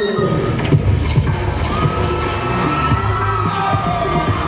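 Loud music for a hip hop dance routine, with a steady beat, and an audience cheering and shouting over it.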